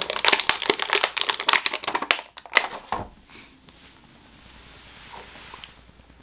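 Plastic packaging crinkling and crackling as it is handled to get a small toy figure out, dense for about the first three seconds and then dropping to faint handling noise.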